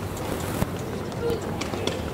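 Indistinct background voices over a steady outdoor noise, with a few short clicks.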